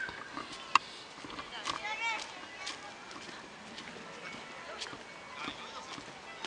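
Voices of people at a distance, one rising and falling briefly about two seconds in, with a few sharp ticks scattered through.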